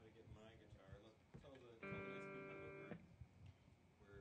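A guitar chord strummed once and left ringing for about a second, the loudest sound here, with quiet talking before and after it.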